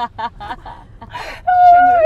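A young woman laughing in short choppy bursts, then a breathy gasp and a long, high-pitched squeal near the end, the loudest sound, over the low hum of car road noise.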